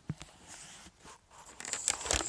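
Handling noise from a phone camera being swung around: a click at the start, then faint rustling that grows louder with a few more clicks near the end.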